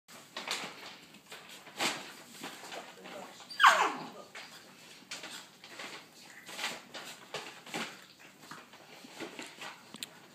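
Two puppies play-fighting, with short scattered scuffles and yips and one loud whining yelp that falls in pitch about three and a half seconds in.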